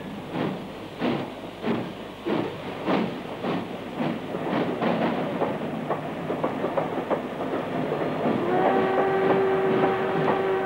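Train pulling out of a station: a rhythmic beat of wheels and engine that quickens as it gathers speed, with a steady whistle sounding from near the end.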